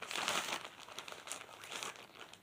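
Clear plastic clothing bag crinkling as it is handled and opened, loudest in the first half second and going on more softly after.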